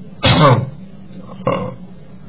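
A man's voice making two short vocal sounds, the first about half a second long with a falling pitch, the second briefer near the end.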